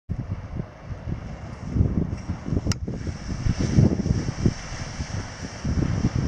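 Wind buffeting the microphone in uneven gusts, with one sharp click a little before the middle.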